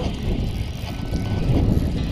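Steady low rumble of wind buffeting an action camera's microphone.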